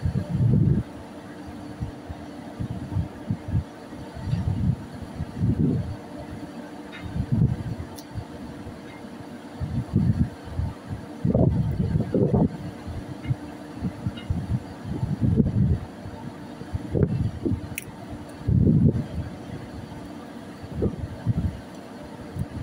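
Wind buffeting the microphone in irregular low gusts, over a steady low hum from the ship's machinery.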